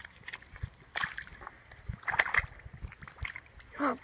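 Feet squelching and splashing in wet creek mud, as several separate squelches.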